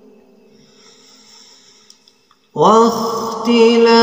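Quran recitation in maqam Bayati by a man's solo voice. The previous held note dies away into a pause, then about two and a half seconds in he comes in loudly on a new long held note that rises in pitch.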